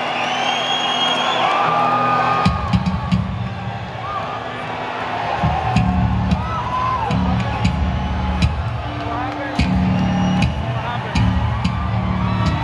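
Rock band playing live, heard from among the audience: bass and guitar play a stop-start low riff that comes in about two and a half seconds in, with the crowd whooping and whistling over it.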